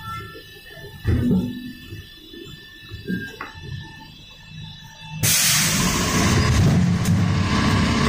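Inside a Skoda 14Tr trolleybus: a steady whine of fixed tones over a low rumble, with a couple of knocks. About five seconds in, a loud steady rushing noise starts suddenly and keeps on.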